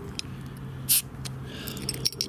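A beer bottle's cap is opened: a short, sharp hiss of escaping carbonation about a second in, with small clicks of the cap being handled around it.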